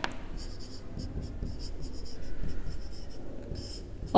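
Marker pen writing on a whiteboard: a quick run of short, scratchy strokes as a word is written out.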